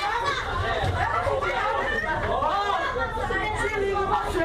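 Many voices talking loudly over one another inside a bus during a fight among passengers, with a steady low rumble underneath.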